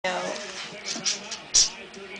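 A cocker spaniel puppy's brief whine at the start, then a few short cat hisses, the loudest about a second and a half in, as a cat squares off against the dog.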